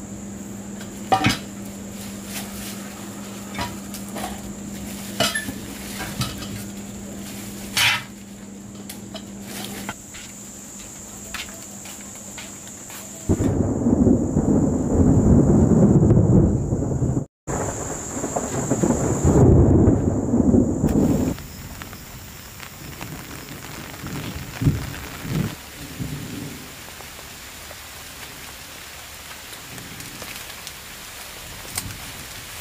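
Thunder rumbling loudly for about eight seconds from a little before the middle, broken by a brief cut partway through. Before it, a few sharp clicks over a steady low hum; after it, a soft patter of rain.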